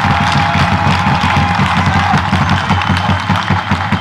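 Football spectators cheering and clapping after a goal, over an irregular low rumble.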